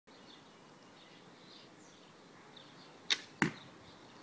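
Handmade wooden longbow loosed: a sharp snap of the bowstring about three seconds in, then the field-point arrow striking the target about a third of a second later, the louder and heavier of the two hits.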